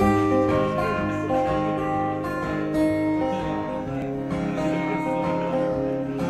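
Live band starting a song: acoustic guitar strumming over held keyboard chords, with no singing yet.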